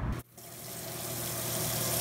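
A low rumble cuts off abruptly near the start. Then a steady rushing hiss of water running from a kitchen tap into a sink builds up over a low steady hum.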